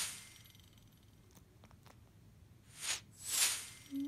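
Sleeping flat-faced cat breathing audibly through its nose: short hissy breaths, one fading at the start and a close in-and-out pair about three seconds in, over quiet room tone.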